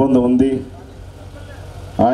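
A man speaking into a handheld microphone; his phrase ends about half a second in, followed by a pause of low background noise before he speaks again.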